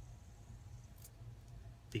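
Light-up fidget spinner spinning in the fingers, almost silent, over a low steady hum, with a single faint click about a second in.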